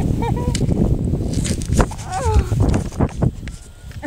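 Wind buffeting the microphone in an uneven low rumble, with a short whoop from a person that falls in pitch about two seconds in and a few sharp clicks.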